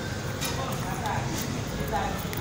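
Faint, indistinct voices over steady low background noise.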